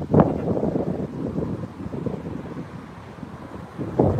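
Wind buffeting the phone's microphone: a low, unpitched rumble that eases off toward the end.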